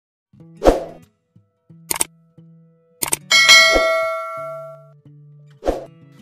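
Intro sound effects: a series of sharp metallic hits, one about three and a half seconds in ringing on like a struck chime and fading over about a second and a half, with a low steady tone between the hits.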